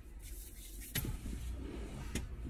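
Close handling noise inside a car: a hissing swish, a sharp click about a second in, then rustling as a wig and hands brush past the microphone, over a low steady cabin rumble.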